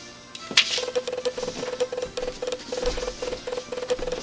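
Background music that starts suddenly about half a second in, with a fast clicking beat and a short tone repeated about five times a second.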